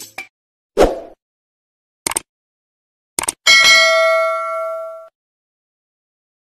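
Subscribe-button animation sound effects: a soft pop about a second in, two short clicks, then a bell ding that rings out for about a second and a half.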